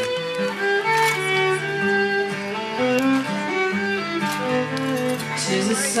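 A fiddle playing a slow instrumental melody of held notes, accompanied by a strummed steel-string acoustic guitar.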